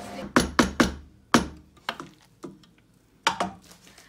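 A wooden spoon knocking against the side of a large non-stick pan while spaghetti is mixed, about eight sharp, irregular knocks. The loudest comes about a second and a half in, and they grow sparser toward the end.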